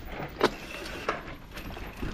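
Downhill mountain bike rolling slowly over a dirt trail with a low rolling noise, a sharp clack about half a second in and a lighter knock about a second in.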